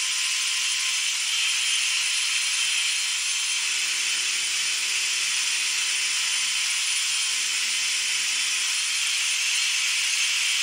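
Small electric screwdriver motor and gearbox (Ryobi 4 V lithium screwdriver) running flat out on about 32 volts, far over its rated voltage: a steady high-pitched whir with a rattle. A fainter lower hum comes in twice in the middle.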